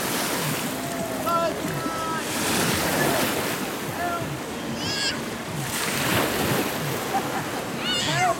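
Wave-pool water rushing and splashing in steady surges as artificial waves break across the shallow end. Short high-pitched shouts from people in the pool sound over it several times.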